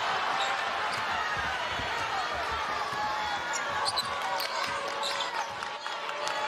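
Live basketball game in an arena: a steady crowd din, with short high sneaker squeaks on the hardwood floor and a ball being dribbled.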